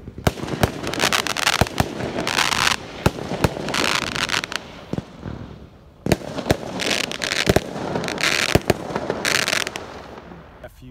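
Fireworks going off: a run of sharp bangs and pops, mixed with several stretches of dense hissing, and a brief lull about halfway through.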